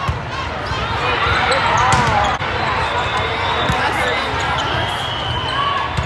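Volleyball rally in play: the ball is struck several times in a few seconds as it is dug, set and hit, each contact a short sharp slap, over the continuous chatter and calls of players and spectators.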